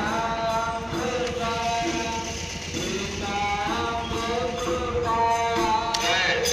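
Hindu devotional chant sung to a slow melody, the voice holding notes of about half a second to a second each.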